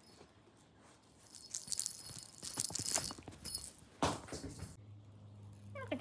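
A small bell jingling in quick shakes for about two seconds, as a cat plays at a bell toy, then a single sharp knock about four seconds in.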